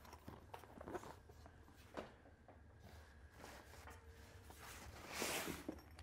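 Faint handling noise: small clicks and rustles of packaging, then a louder rustle near the end as a padded camera bag is lifted out of a cardboard box.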